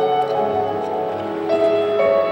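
A figure skater's program music: instrumental music with long held notes, a new note entering about one and a half seconds in.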